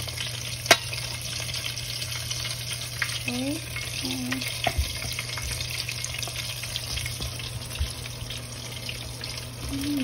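Breaded chicken frying in hot canola oil in a Dutch oven: a steady crackling sizzle. A sharp click of metal tongs comes about a second in, and a brief hum of voice near the middle.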